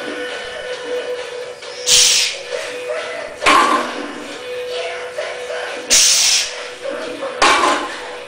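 Two deadlift reps with a 245 kg barbell over steady background music: four loud bursts in two pairs, each pair a sharp hissing burst followed about a second and a half later by a fuller burst, the lifter's forced breathing and the loaded bar being pulled and set down.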